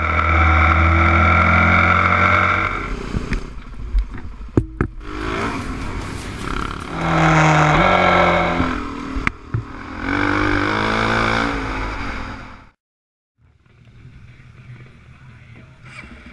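Motorcycle engines under way on the road, loud, revs holding steady and then rising and falling in steps, in a few separate stretches. A short break comes about thirteen seconds in, followed by quieter engine sound.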